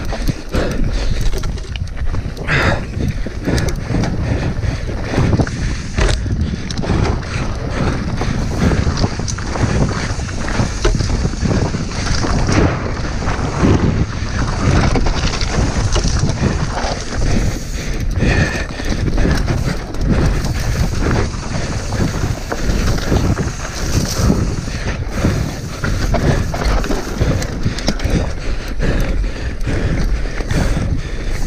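Devinci Spartan enduro mountain bike descending fast over loose rock and gravel: tyres crunching, and the bike rattling with many short knocks over the bumps, under steady wind noise on the microphone.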